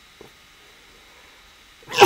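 Quiet room tone with one faint tick about a quarter second in. Right at the end, a man breaks into a sudden loud cough-like outburst.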